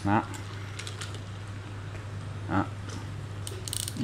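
Sportsmatic-X spinning fishing reel worked by hand: a steady low whir as the handle turns the rotor, then a quick cluster of sharp clicks near the end as the reel is handled.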